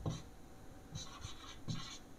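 Marker pen writing letters on a whiteboard: faint scratching strokes, most of them in the second half.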